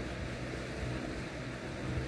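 Steady, low background hum and hiss of the room, with no distinct events.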